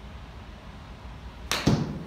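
Golf iron striking a ball off a hitting mat: one sharp crack about one and a half seconds in, with a second loud hit a split second after it.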